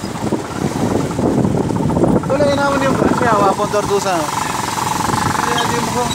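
Motorcycle engine running as the bike rides along.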